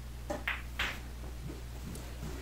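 A pool shot: sharp clicks of the cue tip striking the cue ball and of balls colliding, two main clicks about a third of a second apart within the first second.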